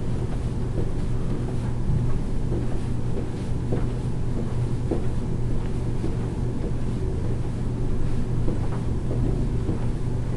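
A steady low hum, with faint soft footfalls of a person marching in place coming through it about once every second or less.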